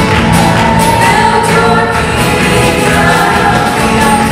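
Live Christian folk-rock band playing: several voices singing together over acoustic guitars, electric bass and a drum kit, with steady drum strokes throughout.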